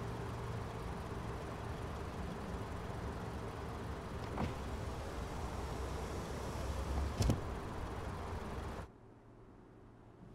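Inside a parked car, a steady low hum runs while the car's power window glass slides up, with a small click about four and a half seconds in and a sharper thunk a little after seven seconds as it shuts. About nine seconds in the sound drops to a quiet hush.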